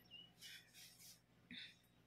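Near silence: quiet room tone with a few faint, distant bird chirps.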